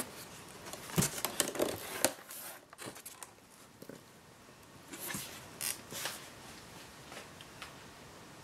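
Cardboard box flaps being pulled open and folded back, with scrapes and knocks against the styrofoam packing: a busy cluster in the first two seconds, then a few more about five to six seconds in.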